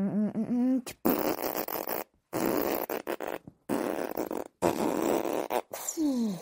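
Voice-made sound effects: a short warbling, wavering tone, then four long harsh, rasping noisy bursts with brief breaks between them. A falling tone begins near the end.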